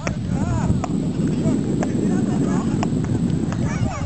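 Beach tennis paddles striking the ball in a serve and rally, sharp pocks about once a second, over a steady low rumble.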